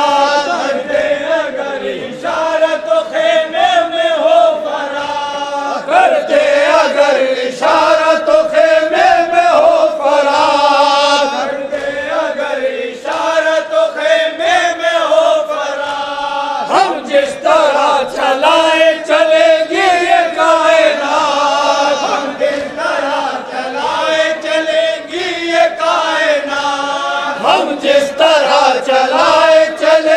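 A noha sung by a group of men in unison behind a lead reciter, in long chanted phrases that break every few seconds. Sharp slaps, likely hands beating on chests in matam, sound through the singing.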